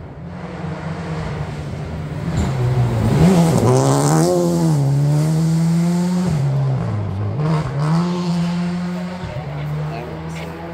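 A rally car at racing speed on a gravel stage, its engine revving hard. The sound grows loud as the car comes through about three to four seconds in, with the pitch dropping and climbing again through gear changes and lifts. It stays loud as the car goes on up the road.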